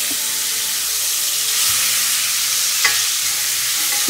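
Steaks sizzling steadily in a cast-iron skillet over a gas flame, with a metal fork working the meat and one sharp click of metal on the pan a little before three seconds in.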